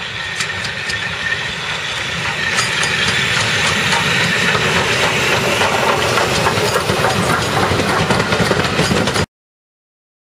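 Steam locomotive and its train of coaches approaching and passing close by, the running noise and hiss growing steadily louder, with sharp clicks from the wheels on the rails as the coaches roll past. The sound cuts off suddenly near the end.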